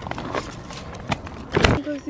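Loose stones and gravel being handled and shifted by hand, with a few light clicks and a heavier knock about a second and a half in.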